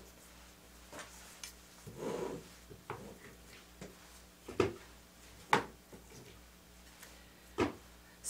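Plastic spatula scooping solid palm oil and dropping it into a plastic pitcher: a soft scrape about two seconds in, then a few sharp taps near the middle and near the end.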